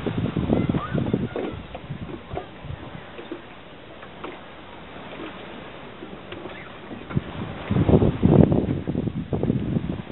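Wind buffeting the camera microphone in gusts, strongest in the first two seconds and again near the end, with a quieter lull in between.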